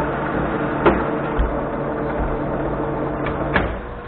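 Monarch manual lathe running with a steady drone while taking a very light threading pass in steel. Two sharp clicks come about a second in and just before the end, and the drone then falls away as the spindle is stopped.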